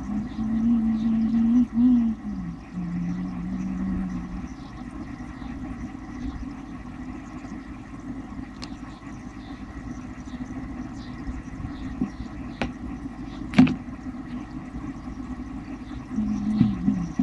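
Aquarium air pump running with a steady low hum while feeding air through an airline tube into a bowl of water. A wavering pitched tone sounds over it in the first four seconds, and there are a few sharp clicks near the end.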